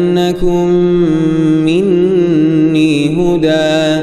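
A young man's voice reciting the Quran in a melodic, drawn-out tajweed style, holding long sustained notes, with a short break just after the start and a wavering ornament on the held note about halfway through.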